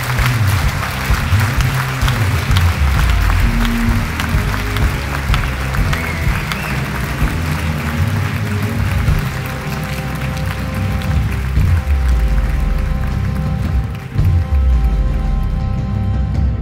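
Audience clapping over live band music with a heavy bass line. The clapping thins out after the first few seconds, and sustained held keyboard-like tones come through over the bass in the second half.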